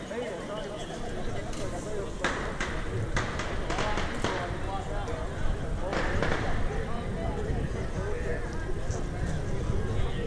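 A street crowd talking and calling out indistinctly, many voices overlapping, over a steady low rumble. A few brief louder noisy bursts come in the middle.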